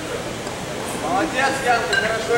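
Background noise of a large sports hall, with a person's voice calling out from about a second in.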